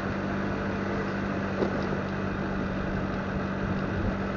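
Motorcycle engine running steadily at low speed while riding, an even drone with one constant hum, over a haze of road and air noise.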